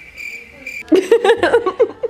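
A steady high-pitched tone lasts for under a second. Then a woman laughs briefly, in a run of short bursts, which is the loudest sound.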